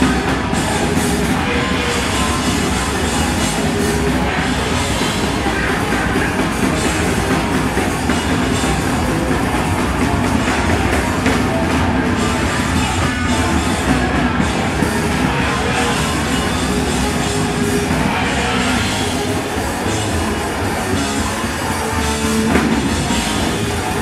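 Hardcore punk band playing live and loud: electric guitar and drum kit going full tilt without a break.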